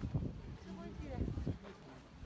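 People's voices talking, brief and overlapping, with a few low knocks; it goes quieter near the end.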